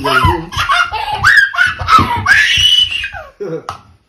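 Laughter from a small child and family members, with a long high-pitched squeal of delight about two seconds in.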